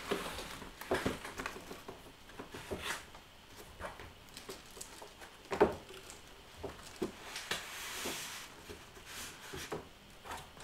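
A cardboard product box being opened and its contents handled by hand: irregular rustling and scraping with soft knocks, the sharpest knock about halfway through.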